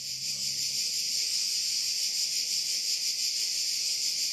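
A steady, high-pitched hiss-like drone that continues without change while nobody speaks.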